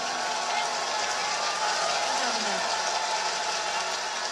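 Large concert audience applauding and cheering after a song ends, a steady even wash of clapping.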